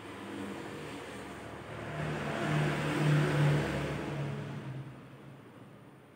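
A motor vehicle passing by: its engine hum and road noise swell to a peak about three seconds in, then fade away.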